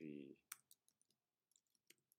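Faint keystrokes on a computer keyboard: a scatter of quick taps, about eight of them, as a line of code is typed.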